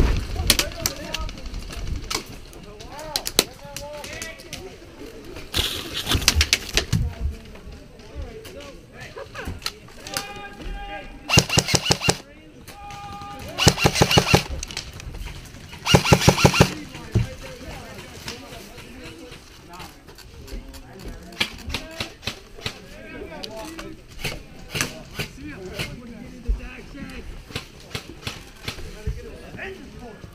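Airsoft electric rifle firing full-auto bursts: four rapid strings of shots, each a little over a second long. The first comes about six seconds in, and the other three fall between eleven and seventeen seconds in. Between the bursts there are scattered clicks and knocks.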